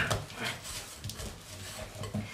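Faint, soft sounds of hands kneading and pressing a firm sesame-and-flour dough against the sides of a glass bowl.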